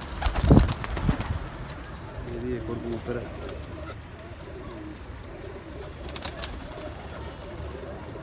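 Domestic high-flier pigeons cooing in low, warbling coos, about two seconds in and again later on. There are a couple of loud, low, muffled thumps in the first second or so.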